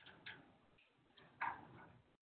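A few faint clicks and knocks in a room, the loudest about one and a half seconds in.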